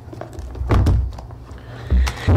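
A booklet of papers handled close to a table microphone: a thunk about three-quarters of a second in, and a low thump near the end as it is set down on the table.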